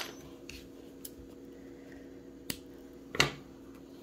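A few short, sharp clicks and taps from hands handling the crochet work and tools on a table, the loudest about three seconds in, over a steady low hum.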